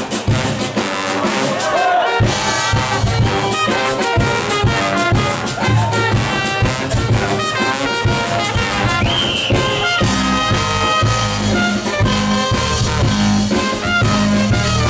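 Live ska band playing, its horn section of trombones, trumpet and saxophone carrying the tune over drums and electric bass. The bass and drums fill out about two seconds in, with a heavier, steadier bass line from about ten seconds.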